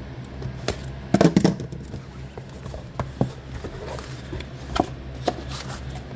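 A cardboard product box being slit open with a utility knife and its lid lifted: a run of sharp clicks and scrapes, loudest about a second in, over a steady low hum.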